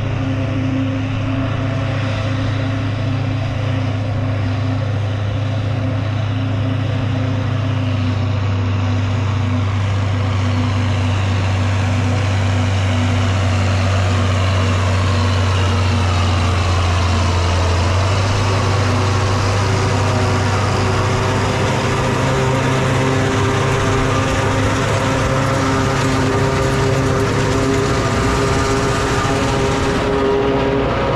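A large John Deere tractor running under steady load as it pulls a forage chopper that is chopping windrowed alfalfa and blowing it into a wagon. The engine and chopper make one continuous sound, and the tone shifts about eighteen seconds in as the outfit passes close by.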